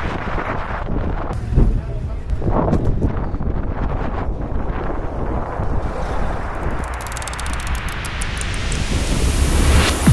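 Strong wind buffeting the microphone of a camera carried by a rollerblader skating city streets, a steady low rumble. Over the last few seconds a hiss rises in pitch and grows louder.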